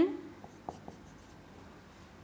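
Marker pen writing on a whiteboard: a few faint, short strokes and taps in the first second, as an arrow and a label are drawn.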